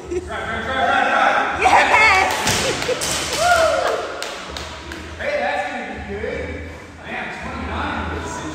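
A loaded 75 lb barbell with bumper plates dropped onto rubber gym flooring with a single thud, about three seconds in, among untranscribed voices.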